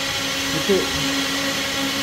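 A steady motor whir with a constant low hum, unbroken throughout. About half a second in there is a brief vocal sound.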